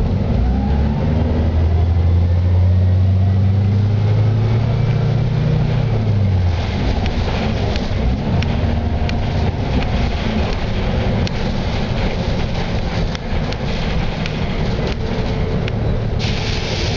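Transit bus's Cummins B Gas Plus natural-gas engine pulling the bus away, its low drone rising in pitch for about five seconds, then falling off near six seconds. After that comes steady road noise with scattered interior rattles and clicks as the bus rolls on.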